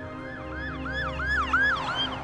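A warbling electronic siren, its pitch sweeping up and down about four times a second, swelling to its loudest about one and a half seconds in, over steady background music.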